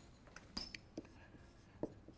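Faint, scattered taps and short squeaks of a dry-erase marker writing on a whiteboard, about five small sounds over two seconds.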